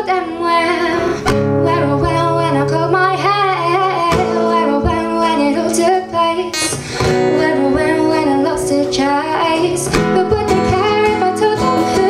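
A woman singing with her own strummed acoustic guitar accompaniment.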